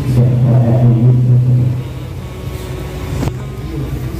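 A man's voice through a microphone and loudspeaker, low and drawn-out for about the first two seconds, then quieter, over a steady low hum.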